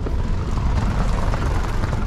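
Wind buffeting a handheld camera's microphone: a loud, uneven low rumble with a hiss above it.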